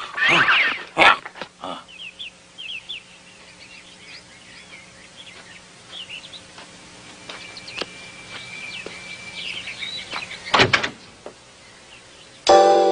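A short laugh, then small birds chirping sparsely for several seconds over a faint hum, and a brief loud thump near the end.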